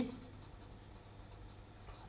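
Marker pen writing on paper: faint, quick scratchy strokes as a word is written out by hand.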